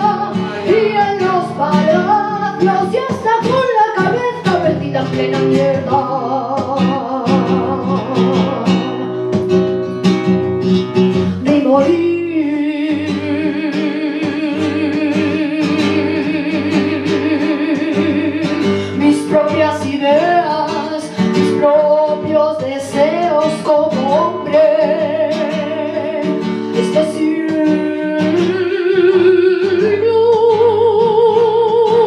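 A woman singing flamenco over a flamenco guitar. Her voice bends through ornamented phrases and holds long wavering notes through the middle of the stretch, while the guitar plays throughout.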